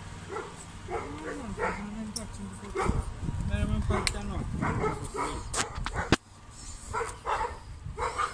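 A dog barking repeatedly in short bursts, sounding aggressive.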